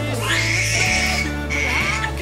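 Newborn baby crying in two short, high-pitched wails, over background music.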